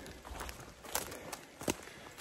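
Faint footsteps and rustling on the forest floor, with a couple of light, sharp clicks about a second in and again near the end.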